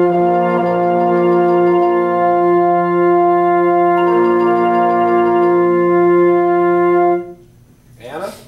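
A wind ensemble, brass prominent, holds one long sustained chord. Inner parts shift about half a second in and again about four seconds in, and all the players cut off together about seven seconds in.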